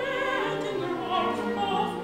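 A woman singing in a classical, operatic style with wide vibrato, over a chamber string orchestra playing sustained, slow-moving chords.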